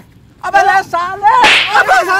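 A single sharp smack, a blow landing on a man's head about one and a half seconds in, between men's shouting voices.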